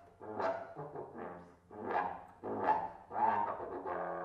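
Trombone playing a string of short, accented blasts, about five in four seconds, each swelling quickly and dying away, over a faint steady low drone.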